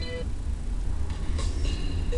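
Steady low rumble of a car's engine and tyres heard inside the cabin while driving, with radio music cutting off just after the start.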